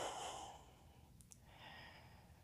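A person's breathy exhale through the mouth, trailing off within the first half second, then near silence with a couple of faint ticks and a soft breath near the end.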